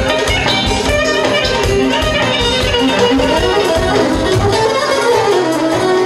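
A live band plays fast dance music: a melody on clarinet and keyboard over a steady, even drum beat.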